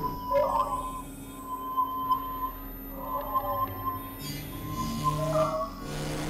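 Experimental synthesizer drone music: a steady high held tone over low sustained drones, broken by swooping glides in pitch three times.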